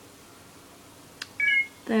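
A single click, then a short electronic beep of a few pitches sounding together, lasting about a quarter of a second.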